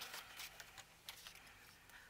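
Near silence, with a few faint taps and rustles in the first half second from paper and a plastic paper trimmer being handled on a cutting mat.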